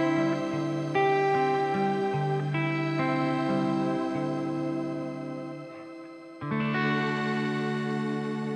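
Clean electric guitar playing sustained chords through the Sonicake Matribox II's shimmer reverb, set to a long decay with the high end turned down. The chords change every second or two and ring into a long wash. It fades about six seconds in before a new chord is struck.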